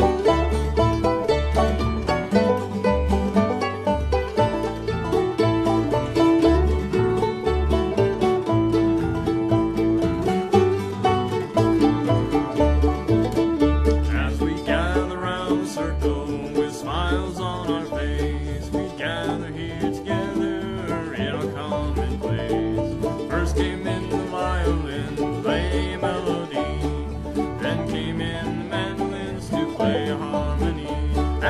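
Old-time string band playing an instrumental passage: banjo and guitar picking over a steady bass line. A higher, wavering lead line comes in about halfway through.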